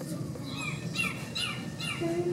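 A bird calling in a quick series of four short, falling notes, about two a second, over steady low background noise.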